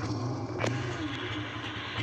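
Motorcycle engine idling steadily, with one sharp click a little over half a second in.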